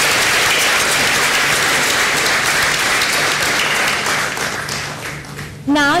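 Large audience applauding, the clapping thinning out and dying away near the end.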